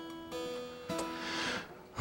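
Steel-string acoustic guitar played softly, single notes picked and left ringing as a song's intro, with new notes struck about a third of a second and about a second in.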